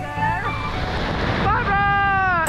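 Rushing wind noise on the microphone of a parachutist under canopy, then a high-pitched excited shout held as one long note that falls in pitch at the end. Background music fades out early on.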